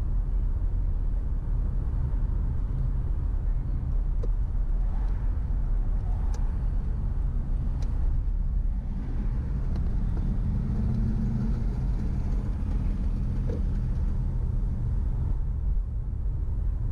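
Car driving on town streets, heard from inside the cabin: a steady low rumble of engine and tyre noise, with a faint hum rising briefly about ten seconds in.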